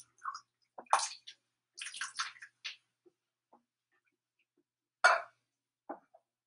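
Canned diced tomatoes sliding out of the can and splashing into a pot of broth in a few short, wet plops, the loudest about five seconds in.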